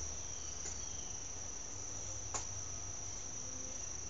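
A steady high-pitched whine over a low hum, with one faint click a little past halfway.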